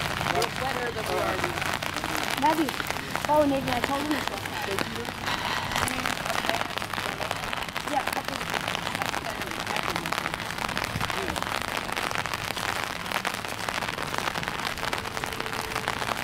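Steady rain falling, a continuous crackly patter, with faint voices chattering in the first few seconds.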